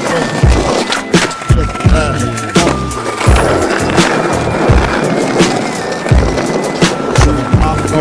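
Skateboard wheels rolling over smooth concrete, with the clacks and knocks of the board under a skater pushing and riding, mixed with a music track that has a steady beat.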